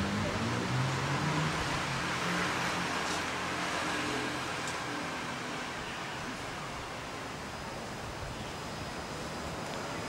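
Steady outdoor background noise, a broad hiss, with a low hum in the first two seconds that fades away. No clear event stands out.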